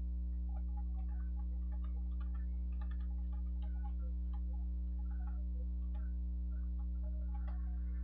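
Computer keyboard typing in quick irregular clicks, including presses of the Enter key, over a steady low electrical hum.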